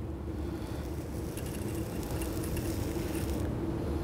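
Steady low machine hum with a faint steady tone over light hiss; no welding arc is running.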